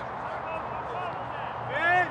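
Footballers shouting and calling to each other across the pitch, words not clear, with one loud rising-and-falling shout near the end. A steady low hum runs underneath.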